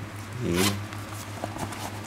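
Zipper on a small fabric crossbody bag pulled open: a quick rasp about half a second in, followed by faint ticks and rustling of the fabric as the opening is spread.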